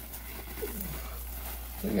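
Loose reptile soil poured from a plastic bag into a plastic tub, a soft, even rustling and trickling with the bag crinkling.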